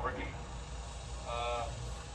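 A man's short held voiced sound, like a hesitant 'uhh', about a second and a half in, over a steady low hum.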